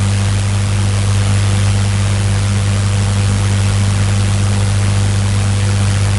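Steady low electrical hum with an even hiss, unchanging throughout and with no other events.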